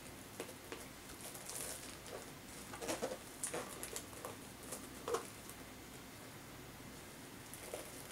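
Faint rustling and crinkling of a sheer ribbon being handled and tied into a knot around a small gift box, with short crinkles scattered through the first five seconds.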